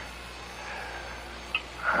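A pause between lines of an old radio drama recording: steady low hum and faint hiss, with a tiny click about one and a half seconds in.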